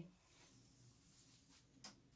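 Near silence: faint room tone, with one short faint click near the end.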